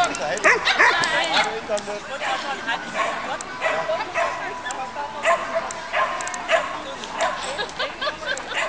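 A dog yipping and barking over and over, about one to two sharp, high calls a second, in excited barking during an agility run.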